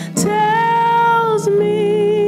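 A woman singing solo into a microphone over backing music, holding one long note and then moving to a slightly lower one near the end.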